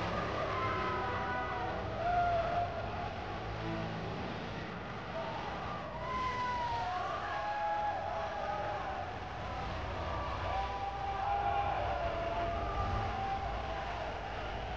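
Audio from the arena event playing: several sustained, wavering pitched tones that glide up and down, over a steady low rumble, with no speech.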